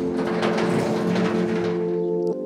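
A large door being opened, a scraping, rattling noise lasting about a second and a half, over sustained ambient music chords.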